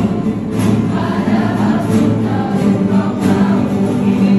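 A large group of students singing together in unison while strumming many acoustic guitars in a steady rhythm.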